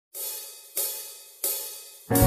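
Three bright, ringing percussion taps, evenly spaced about two-thirds of a second apart, each fading away: a count-in for a hymn backing track.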